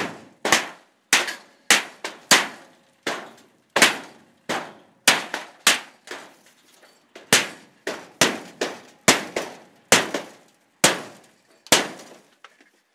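Repeated blows on the thin corrugated sheet-metal panels of a blown-down metal shed, about twenty sharp clanging strikes at roughly two a second, each ringing briefly, with a short pause midway, as the shed is being knocked apart.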